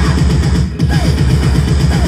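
Electro-punk band playing live and loud: a driving electronic beat with heavy pulsing bass, keyboards and electric guitar, dipping briefly about three-quarters of a second in.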